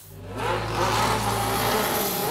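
Mercedes F1 W06 Hybrid's 1.6-litre turbocharged V6 power unit firing up and running. It comes in suddenly, builds over about half a second, then holds steady.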